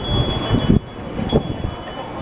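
Bicycle bells ringing on and off, high and metallic, over the jumble of a street crowd and rolling bicycles.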